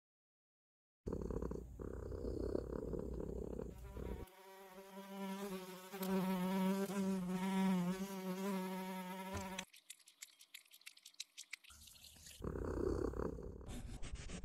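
Cartoon sound effect of a housefly buzzing: a wavering drone of about five seconds, with a rushing noise before it and a run of quick clicks after it.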